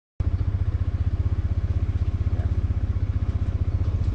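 An engine idling with a steady, fast, low putter that starts a moment in and holds an even rhythm.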